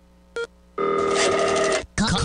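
Mobile phone ringtone ringing for about a second, steady, after a short beep about a third of a second in.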